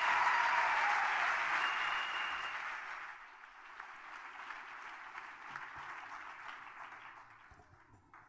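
Audience applauding, loud at first, then fading from about three seconds in and dying away near the end.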